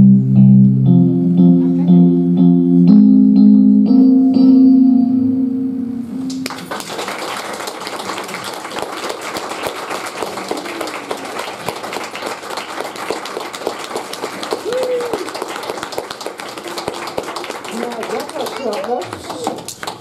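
Slow music of held guitar chords changing about once a second, stopping about six seconds in. Then a small audience applauding, with children's voices rising through the clapping.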